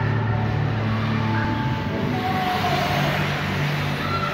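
Busy indoor ice rink: a steady low rumble with faint scattered voices, and a swell of scraping hiss from skate blades on the ice in the second half.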